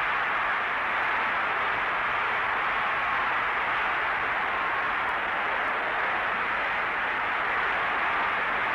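Steady crowd noise from a boxing arena, an even roar with no distinct events, heard through an old fight-film soundtrack.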